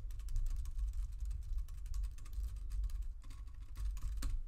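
Typing on a computer keyboard: a fast, steady run of keystroke clicks as a terminal command is entered, over a steady low hum.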